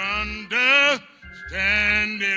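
A man's voice singing a slow hymn into a microphone, drawing out long, sliding notes with heavy vibrato. The notes come in two phrases, with a short break about a second in.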